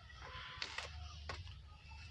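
Faint low hum with a few soft clicks near the middle, typical of handling noise from a hand-held camera being panned.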